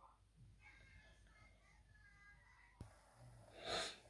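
Near silence, then a short breath near the end, just before speech resumes.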